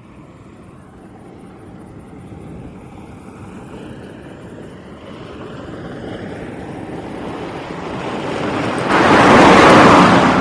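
An old station wagon approaching along a road, its engine and tyre noise growing steadily louder for about nine seconds. Near the end it passes close by at speed in a loud rush that then starts to fade.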